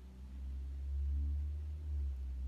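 A low, steady hum that swells louder through the middle.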